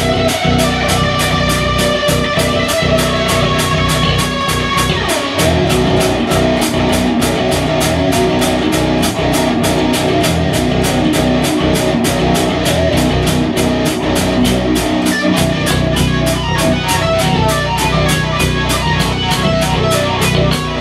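Rock band music: electric guitar and electric bass playing riffs together over a steady drum beat, with cymbal hits about three times a second.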